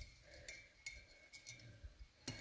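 A few faint clinks of a paintbrush knocking against a glass mason-jar rinse cup while the brush is rinsed.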